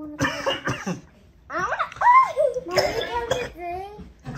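Young girls' voices: two short, sharp coughing bursts in the first second, then after a brief pause high wordless vocal sounds that rise and fall in pitch.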